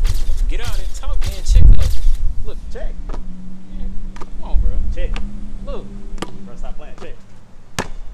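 Basketball dribbled on an outdoor court: a few hard bounces about half a second apart in the first two seconds, then one more sharp bounce near the end.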